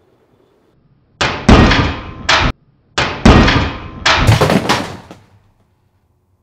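Sharpened ceiling fan blades striking a mannequin's head: about three loud bursts of rapid clattering hits, each about a second long, starting a second or so in.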